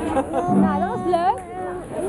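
Children's voices chattering and calling over one another, with a steady low note held for under a second about halfway through.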